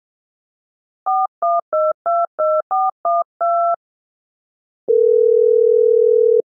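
Telephone keypad touch-tones being dialed: eight quick two-note beeps, the last slightly longer. About a second later comes one steady line tone of the call, lasting about a second and a half.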